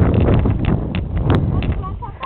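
Low rumbling wind noise on the camera microphone, with irregular thuds of footsteps on grass as the camera-holder walks.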